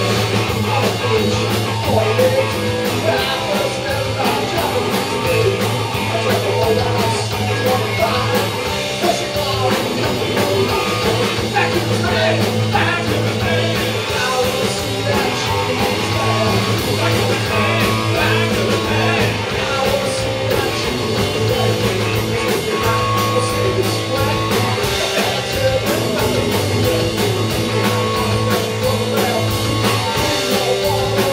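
Live rock band playing steadily and loud: a singer at the microphone over electric guitar, bass and drums, the drums keeping an even beat.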